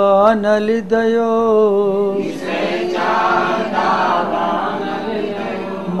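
A man chants a Jain devotional verse in a slow, long-held melody. About two seconds in, a fuller group of voices takes up the chant together.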